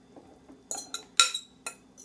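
A metal spoon clinking against a glass mixing bowl as boiled squash chunks are scraped out into a blender jar: a few sharp, ringing clinks in the second half, the loudest a little past the middle.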